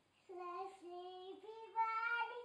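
A young child singing a few long held notes that step up in pitch, louder near the end.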